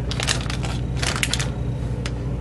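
Clear plastic packaging around a squishy toy crinkling and crackling under the fingers, in two short spells near the start and about a second in, over a steady low hum.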